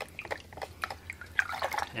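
A stir stick stirring freshly combined automotive clear coat, reducer and hardener in a plastic paint mixing cup: irregular light clicks of the stick against the cup with liquid swishing.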